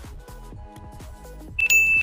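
Electronic background music, then near the end a loud, high ding held for under half a second: a quiz sound-effect chime marking the countdown running out and the answer being revealed.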